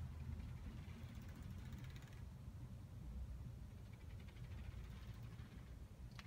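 Faint rustling and sliding of books being handled on a library shelf, in two brief stretches, over a low steady room rumble.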